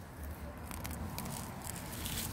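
Gloved hands digging and rummaging through soil and wood chip mulch: faint rustling with a few small crackles.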